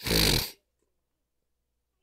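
A man's single short, loud snort through the nose, about half a second long, at the start.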